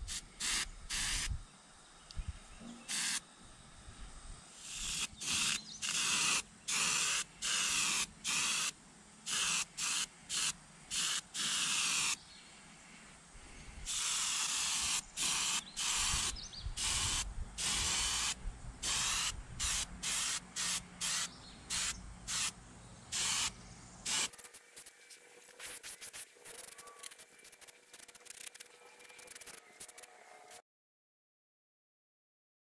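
Airbrush spraying acrylic base coat: bursts of high hiss as the trigger is pressed and released over and over, some passes lasting a second or two. About three-quarters of the way through, the spraying turns fainter and comes in quicker, shorter puffs.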